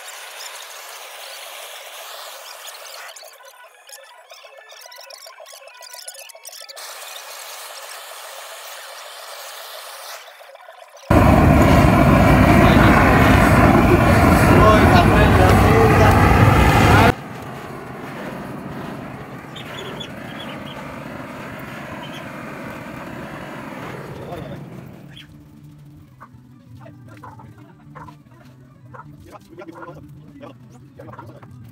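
Gas blowtorch flame burning as it singes the fur off a manicou (opossum) carcass, heard in several abruptly cut stretches. The loudest stretch, from about eleven to seventeen seconds in, is a hard, steady rushing noise.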